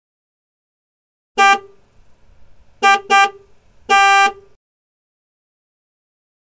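Vehicle horn honking four times: a short honk about a second and a half in, a quick double honk, then a longer honk.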